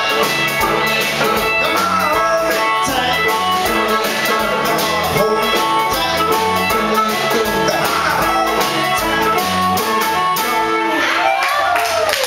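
Live rock band playing: electric guitars over a drum kit.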